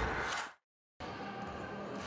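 A broadcast transition whoosh fades out, then there is half a second of dead silence, then the steady background noise of an ice hockey rink during play.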